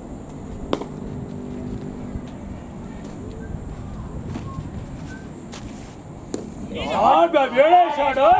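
Outdoors at a cricket match, a sharp knock of a cricket bat striking the ball comes about six seconds in, with a fainter knock about a second in. Right after it, players shout loudly as the batsmen run.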